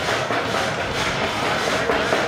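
Steady, dense din of a busy fight venue: music playing over the hubbub of crowd voices.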